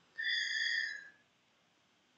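A single steady high tone with overtones, held for about a second and then stopping.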